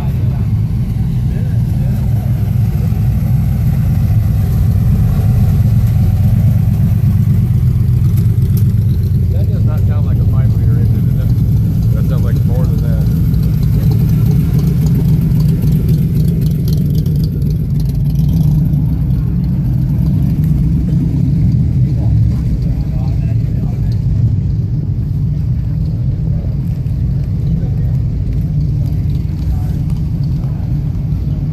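Steady low rumble of car engines, strongest about halfway through as a Cobra-style roadster's V8 rolls slowly past.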